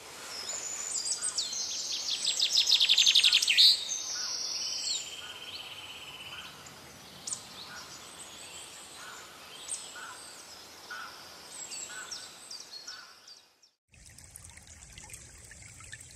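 Songbirds singing in woodland, loudest in the first few seconds with a fast trill, then fainter scattered calls. About two seconds before the end the sound cuts abruptly to a trickling stream.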